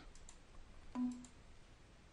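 Faint computer mouse clicks, quiet between stretches of narration. The loudest is a short click about a second in, carrying a brief low hum.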